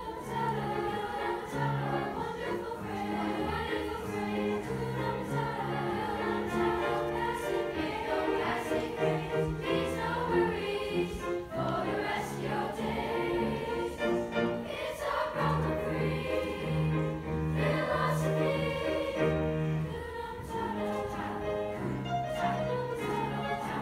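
Children's choir singing with instrumental accompaniment, the bass notes held steady under shifting chords.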